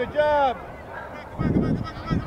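Two drawn-out shouted calls from a voice on the sideline, each rising and then falling in pitch, right at the start, followed by duller background noise.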